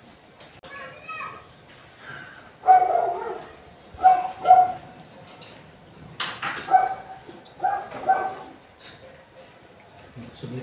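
A dog barking several times in short yaps.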